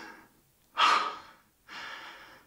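A man's heavy, laboured breaths through the mouth, about one a second, the loudest about a second in.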